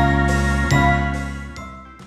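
Short chiming musical jingle: two bright struck chords, one at the start and one under a second later, each ringing on and then fading away.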